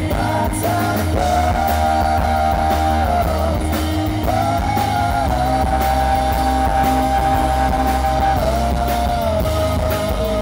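Live rock band playing an instrumental stretch of the song with electric guitars, bass and drums. Over them runs a lead line of long held notes that slide up or down into each new pitch.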